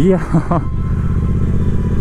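Triumph Bonneville T120's parallel-twin engine running steadily as the motorcycle cruises along at an even speed.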